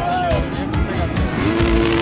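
Dirt bike engines revving on the track, one engine note rising and holding near the end, mixed with music that has a steady electronic beat.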